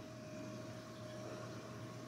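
Faint steady hum of a running reef aquarium's pumps and equipment, with a thin steady tone above it and a light hiss.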